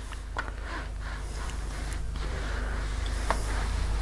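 Quiet rustling and sliding of a small travel iron and a folded fabric strip along a plastic bias-folding ruler on a padded ironing board, with a few faint clicks, over a steady low hum.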